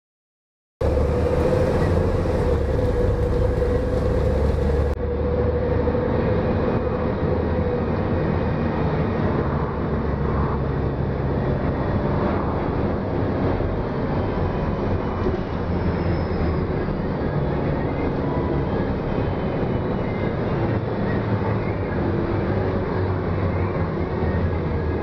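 2004 Gillig Low Floor 30-foot transit bus driving, heard from inside the cabin: a steady engine and road rumble with a held whine. It starts abruptly about a second in.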